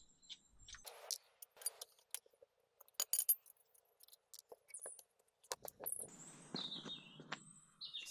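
Loose steel wheel bolts clinking and clicking as they are unscrewed by hand and handled, with a brief cluster of metallic clinks about three seconds in. Birds chirp about six seconds in.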